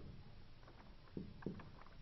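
Marker pen writing on a whiteboard: a few faint, short strokes and taps, the clearest a little over a second in and near the end, over low room hum.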